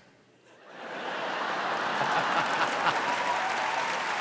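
Studio audience laughing and applauding. It swells in from a brief hush during the first second, then holds steady.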